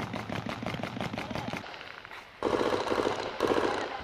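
Automatic gunfire: a rapid string of shots for the first second and a half or so. After a short lull comes a louder, denser stretch of sound with voices mixed in.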